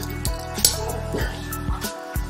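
A few short metallic clicks and clinks from the metal parts of a Notch Rope Runner Pro rope-climbing device as it is handled, over steady background music.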